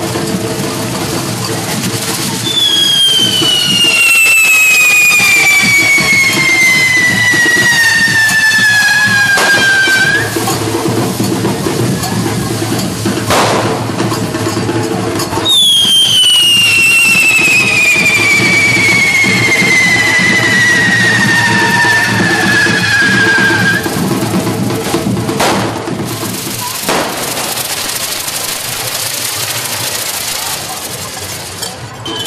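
Two whistling correfoc firework fountains, each giving one long high whistle that falls steadily in pitch over about seven or eight seconds. They play over the steady hiss of burning sparks and background music, with a few sharp cracks in between.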